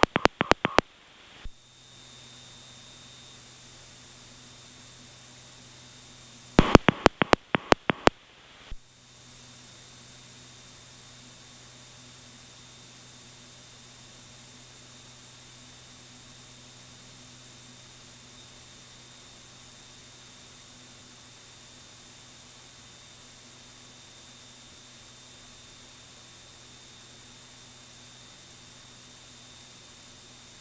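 Steady hiss with a faint low hum from the aircraft's headset audio feed. Twice, shortly after the start and again around seven to nine seconds in, the hiss cuts out and a quick run of sharp clicks is heard, about seven in the second run. This is the pattern of a radio push-to-talk switch being keyed repeatedly.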